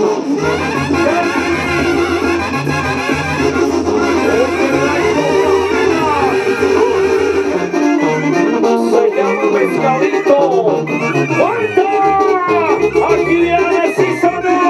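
Brass band music with trumpets and trombones over a stepping bass line, in the style of a Mexican banda.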